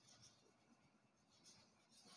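Very faint scratching of chalk writing on a blackboard, barely above near silence.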